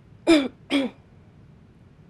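A young woman clears her throat twice in quick succession, two short falling "ahem" sounds, as if steadying herself before speaking.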